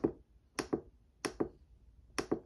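Push buttons on a small digital pocket scale being pressed repeatedly, giving sharp clicks. There is one click at the start, then two double clicks, each a press and release, about two-thirds of a second apart.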